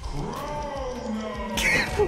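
Film soundtrack: one long wail that slides slowly down in pitch over a low rumble, followed by a short bright burst of noise near the end.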